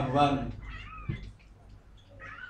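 A person's voice drawn out in a long, wavering, crying tone during prayer, trailing off about half a second in, with only faint voice after.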